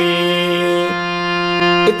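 Electronic keyboard played with a harmonium-like voice, holding one sustained note: the final Ga of a slow Pa–Ma–Ga melody phrase. The note shifts slightly right at the start, holds steady, and stops just before the end.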